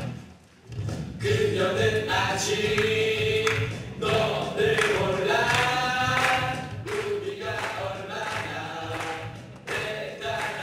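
A song sung by a group of voices together in chorus, with held notes over steady backing music. It starts after a brief drop about half a second in and is loudest in the first half.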